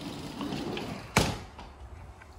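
Sliding glass door rolling along its track, then banging shut a little over a second in.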